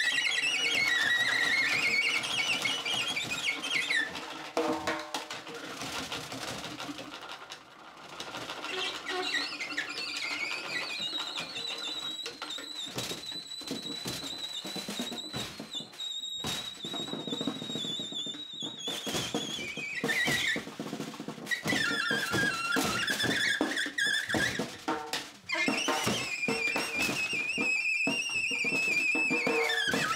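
Freely improvised duo: an alto saxophone squealing high, wavering and gliding notes in its top register, holding one long high note through the middle, over scattered snare drum hits and rattles.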